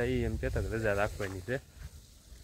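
A man speaking for about a second and a half, then stopping.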